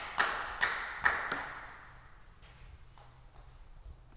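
Table tennis ball bouncing repeatedly, about two sharp echoing pings a second, that stop about a second and a half in. A few faint taps follow.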